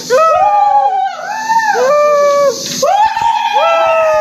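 Loud, drawn-out howls, several overlapping, each rising and then falling over about half a second to a second, with a short lull about a second in.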